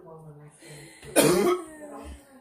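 A person coughing once, loudly and briefly, a little over a second in, with quieter voice sounds before it.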